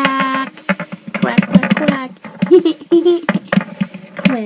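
A child's voice making playful quacking, sing-song noises for a toy duck, several short pitched calls, with small clicks and knocks of toys being handled.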